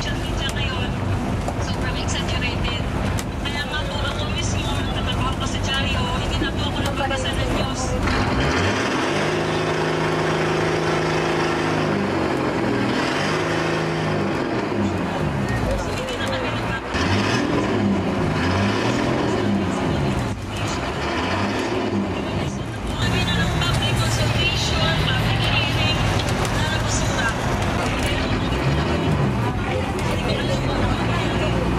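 Outrigger boat's engine running, its speed rising and falling several times through the middle stretch as the boat gets under way, with people talking over it.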